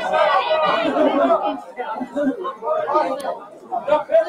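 People talking: continuous chatter of voices.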